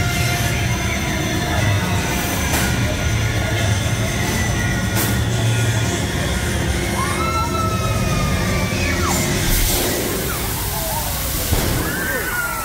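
Loud show soundtrack of a theme-park fire-and-water special-effects show: music over a deep, sustained rumble, with a few short sharp hits.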